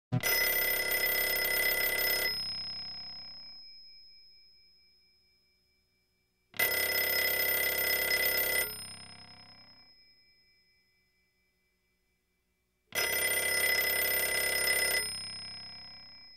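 A telephone bell ringing three times. Each ring lasts about two seconds and is followed by the bell fading away, with the rings about six and a half seconds apart.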